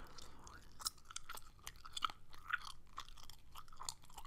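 Gum being chewed close to a microphone: quiet, irregular mouth clicks.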